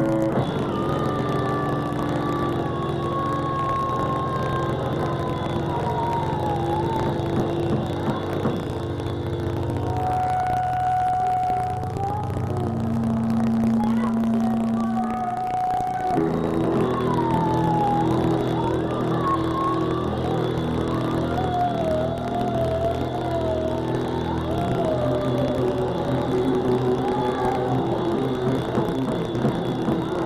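Live rock band playing with electric guitar, bass and drums, and a woman singing over it in wavering, sliding lines. The band drops back to a thinner sustained drone for a few seconds in the middle, then comes back in full.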